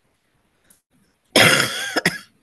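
Near silence, then a single loud, harsh cough about a second and a half in.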